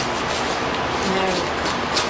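Paper and tape on a small mailed parcel crackling as it is picked open by hand, over a steady background hiss. A faint voice comes in about a second in.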